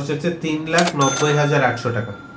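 Cash-register 'ka-ching' sound effect about halfway through: a sharp clink, then a bright ringing chime that hangs on, laid under a man speaking.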